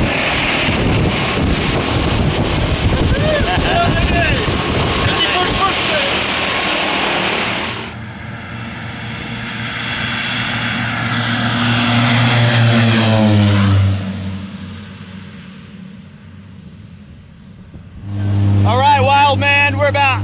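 Loud rushing noise from a skydiving plane's running engines and propellers beside the open door for about eight seconds. Then the plane is heard taking off down the runway, its engine note falling in pitch as it passes and fading away. Near the end a steady engine drone inside the cabin.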